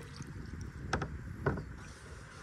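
A kayak being paddled on calm water: two short, sharp paddle-and-water sounds about a second in and half a second later, over a low rumble.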